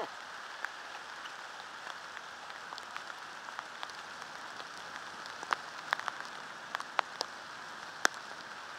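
Steady hiss of heavy rain, with scattered sharp ticks of drops, most of them in the second half.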